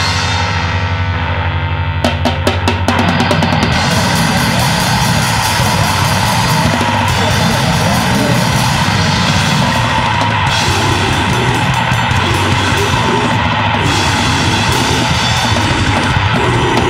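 Grindcore band playing: a drum kit with bass drum, snare and cymbals under heavy, dense guitars. About two seconds in, a quick run of drum hits leads into fast, dense full-band playing.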